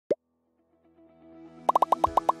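A short rising bloop sound effect, then light background music fading in. Near the end comes a quick run of plucky popping notes.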